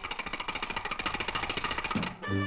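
Rapid mechanical rattle sound effect, a fast even run of clicks lasting about two seconds, as the horse strains at the milk cart; it stops abruptly and the music resumes.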